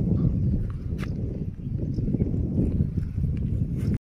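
Wind buffeting a phone's microphone: a heavy, unsteady rumble throughout, with a couple of faint clicks.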